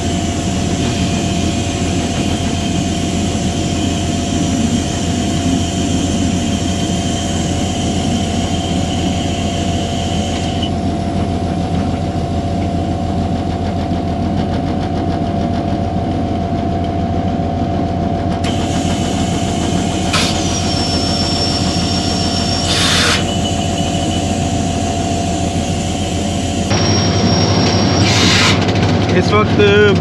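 EMD diesel-electric locomotive running at speed, heard from the front of the locomotive: a steady engine drone with a constant hum under it. Two short sharp sounds come about two-thirds of the way through, and the drone grows louder near the end.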